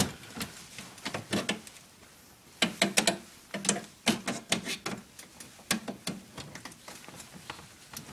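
Hand tools working on the copper header of an HVAC radiator coil: irregular sharp metallic clicks and clinks as the copper is cut and worked loose.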